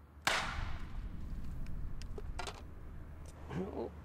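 A small explosive charge set off inside a scale-model bunker in a rock block: one sharp bang a quarter second in, followed by a lingering low rumble and a few light ticks.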